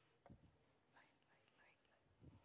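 Near silence: room tone, with a faint low thud about a third of a second in and a few soft, faint sounds after it.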